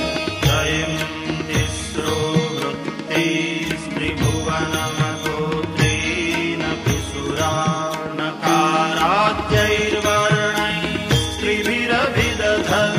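A man's voice chanting a Sanskrit Shiva hymn verse to a melody, over instrumental accompaniment with regular low percussion strokes.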